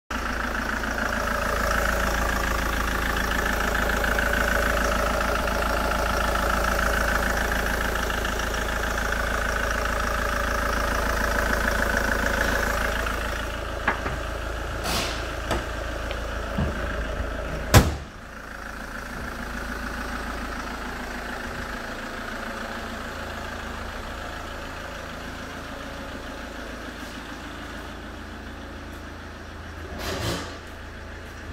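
SsangYong Actyon Sports diesel engine idling steadily. A few light clicks and then a single loud bang come a little past halfway, after which the idle sounds quieter.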